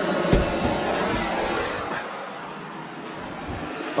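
Steady radio static from a car stereo tuned between stations, played through newly installed speakers, which shows they are working. The hiss is louder for the first two seconds and then softer, with a single sharp click just after the start.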